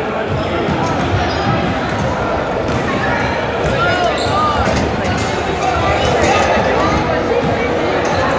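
Basketballs bouncing on a hardwood gym floor during warm-ups, a run of short knocks that echo in the hall, over a steady hubbub of voices.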